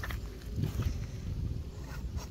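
Quiet outdoor background: a steady low rumble with a few faint rustles and small clicks.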